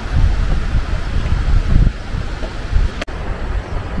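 Wind buffeting the microphone outdoors, a gusty low rumble that rises and falls. A single sharp click with a brief dropout comes about three seconds in.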